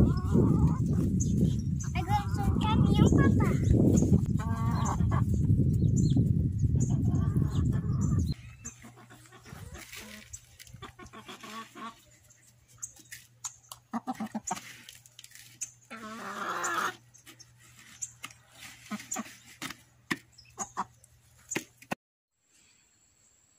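Wind buffeting the microphone for about the first eight seconds, with high wavering calls over it. Then, much quieter, scattered small clicks and rustles of chicken feed being scooped in a plastic feeder tray, with one short call a little after the middle.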